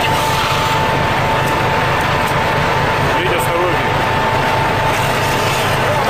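Steady machinery drone of a fishing boat working on deck, a low hum under a constant thin whine, with a brief voice about three seconds in.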